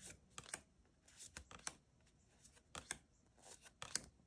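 Faint, scattered soft clicks of tarot cards being flipped through by hand, one card slid from the front of the pile to the back, about nine clicks in four seconds.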